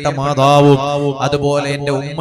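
A man's voice intoning an Islamic supplication, held on a near-steady chant-like pitch.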